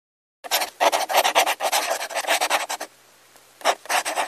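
Pencil scribbling on paper: a rapid run of scratchy strokes, about six a second, for roughly two and a half seconds, then a short pause and one more stroke near the end.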